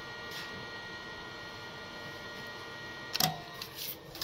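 Draper Expert 80808 induction heater running while heating a seized exhaust-clamp nut red hot: a steady hum with a few fixed high whining tones and a hiss. A short clatter comes about three seconds in, with another knock just before the end.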